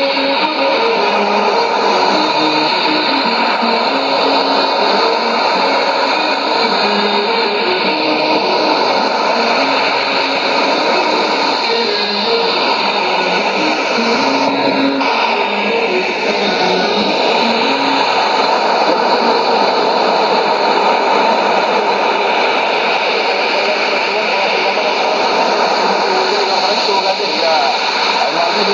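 Music received as a shortwave AM broadcast on a Sony ICF-2001D receiver, a melody stepping from note to note under steady hiss and noise.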